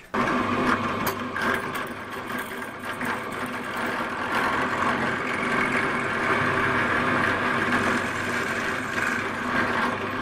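Bench drill press running steadily, its bit boring a hole through the metal guide of a sewing-machine binder attachment.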